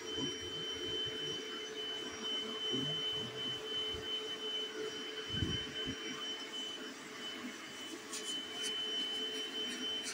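Bissell SpotClean portable carpet cleaner running. Its suction motor gives a steady whine as the hand-tool nozzle is worked over the carpet, with rubbing sounds and a dull bump about halfway through.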